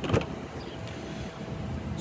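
A single sharp click from a Toyota RAV4's rear door handle and latch as the door is pulled open, followed by steady low background noise.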